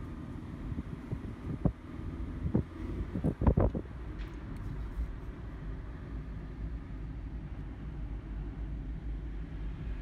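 Steady low road and engine rumble heard from inside a moving car's cabin, with a few short knocks and thumps between about one and a half and four seconds in.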